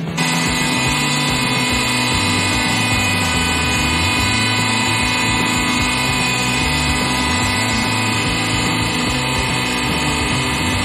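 Hydraulic press's pump and motor running with a steady hum as the ram descends. It starts abruptly about at the beginning and holds an even level throughout, with a shifting low drone underneath.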